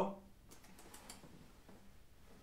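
A few faint light clicks and rustles of a cloth jacket being handled as a hand reaches inside it.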